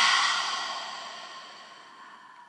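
A woman's long, breathy exhale, a deliberate release breath in a guided breathing exercise, loud at first and fading away steadily over about two seconds.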